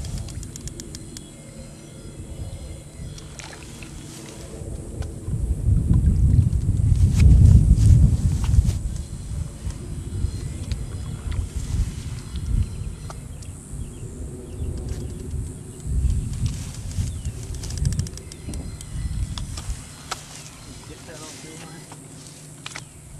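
Wind buffeting the microphone: a low rumble with no clear pitch that swells strongly about five to nine seconds in, with a few faint clicks over it.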